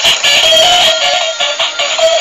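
Tinny electronic melody with a synthesized singing voice, played by a battery-operated toy school bus through its small built-in speaker.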